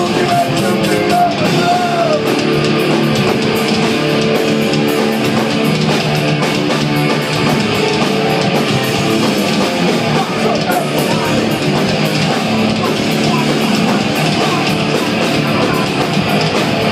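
New York hardcore band playing live at full volume: distorted electric guitars, bass and pounding drums, recorded on a phone from the crowd.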